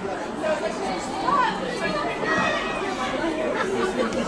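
Several voices calling and chattering on and around a football pitch, with no clear words, over steady open-air background noise.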